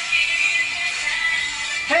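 Live pop band music with a singer, a concert recording being played back.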